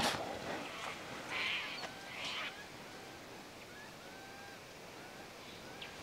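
Faint outdoor birdsong: scattered short chirps, with two brief louder calls in the first two and a half seconds.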